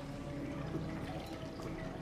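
A man drinking from a metal goblet, with faint swallowing and liquid sounds.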